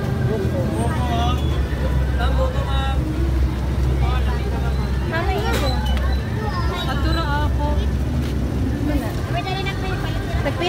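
Busy street sound: scattered voices of passers-by over a steady low engine rumble, which is stronger for the first six seconds or so.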